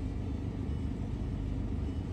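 Chevrolet Colorado's 2.8-litre four-cylinder turbodiesel idling, a steady low hum heard from inside the cabin.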